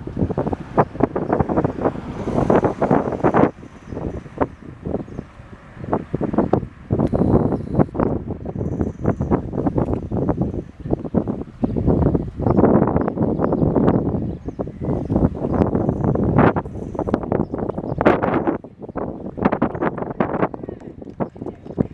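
Wind buffeting the microphone in uneven gusts, rising and falling throughout.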